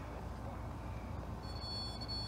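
A steady low background rumble, joined past the halfway point by a steady high-pitched electronic tone sounding at several pitches at once.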